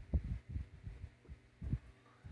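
Coffee being drunk from an insulated travel mug and the mug lowered, heard as a series of soft, low, irregular thumps, about six in two seconds, over a faint steady hum.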